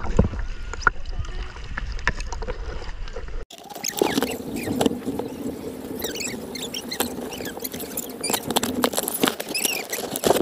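Seawater sloshing and bubbling against a waterproof action camera held at the surface. First comes a low rumbling wash. After an abrupt break about three and a half seconds in, there is a crackling of many small clicks and squeaky bubbling chirps as the housing dips in and out of the water.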